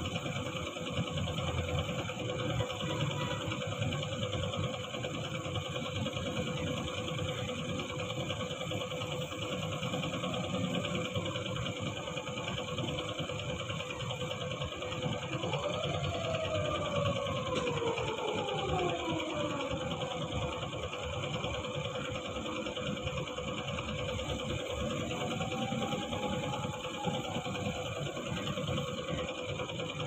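A small tank-mounted electric air compressor running steadily with a constant mechanical hum. About halfway through, a few tones glide downward in pitch, and a short rising-then-falling tone follows later.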